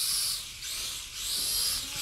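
Small camera quadcopter (Swann Xtreem QuadForce) in flight with its prop guards removed: a high propeller hiss that swells and fades about three times as the throttle changes.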